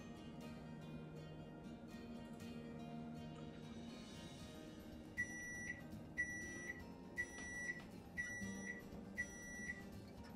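Faint background music, with a kitchen appliance's timer beeping five times, about once a second, starting about halfway through: the signal that its cycle is done.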